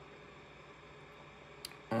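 Quiet room tone with a faint steady hum, and one small click about one and a half seconds in from a small essential oil bottle being handled.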